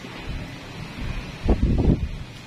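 Low rumble of wind buffeting the microphone, loudest in a short burst about one and a half seconds in, over a faint steady background noise.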